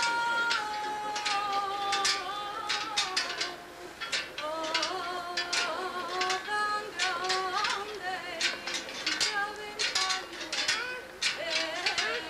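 A woman singing a saeta unaccompanied: a slow flamenco-style sung prayer with long held notes that waver and bend in ornate turns. Frequent sharp clicks sound throughout.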